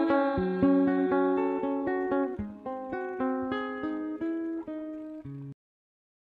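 Acoustic guitar playing a slow passage of plucked single notes, growing gradually quieter. The sound cuts off suddenly about five and a half seconds in.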